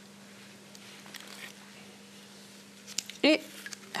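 Faint handling sounds of a canvas sneaker being pressed into a basin of water: a few soft clicks over a steady low hum.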